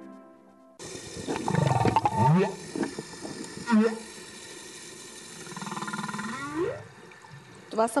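Humpback whale song recorded underwater, starting abruptly about a second in: a series of moans and higher cries that sweep down and up in pitch over a steady hiss.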